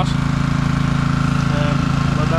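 An engine running steadily at idle close by: a constant low drone that holds one speed throughout.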